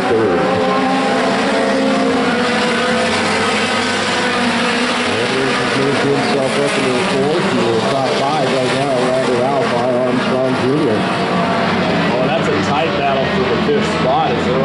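Several race cars' engines running laps together on a paved oval, their pitches rising and falling and overlapping as the cars throttle through the turns and pass by.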